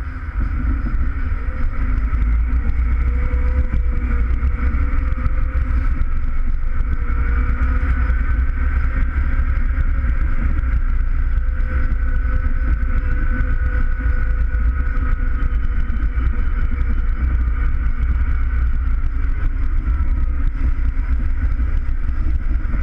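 Valtra N101 tractor's diesel engine running steadily under load, heard from inside the cab: a deep drone with a steady whine above it.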